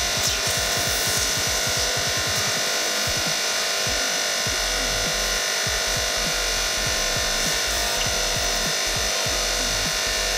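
Electronic music with a steady beat over the continuous steady run of a hydraulic press as its ram bears down on an aerosol can of spray snow. The sound comes in suddenly and at full level right at the start.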